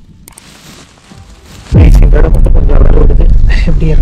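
Wind buffeting the camera microphone: a loud, low rumble that starts suddenly about two seconds in and holds steady.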